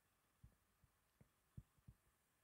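Near silence with a few faint, short low taps, about three, the loudest near the middle: a stylus tapping on a tablet screen while writing.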